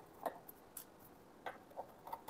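Four faint, scattered light clicks as screws are worked out of a desktop hard drive's metal case by hand.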